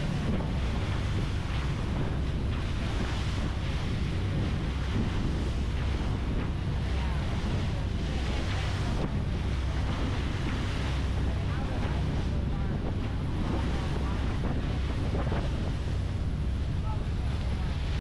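Wind buffeting the microphone over the steady rush of water and spray from a fast-moving small boat cutting through choppy sea.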